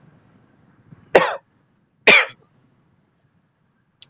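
A man coughs twice, two short sharp coughs about a second apart.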